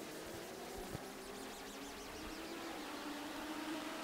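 Faint, steady drone of a pack of Legends race cars running together in formation before the start, with the engine note creeping slightly up in pitch. There is a small click about a second in.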